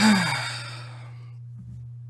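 A man sighs once, loudly and close to the microphone: a breathy exhale falling in pitch that fades within about a second. A steady low hum runs underneath.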